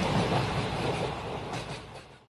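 A train running on its rails, a steady rumbling clatter that fades out near the end.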